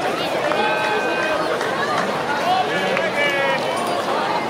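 Baseball spectators in the stands: many voices talking and calling out at once, with a few drawn-out shouted calls.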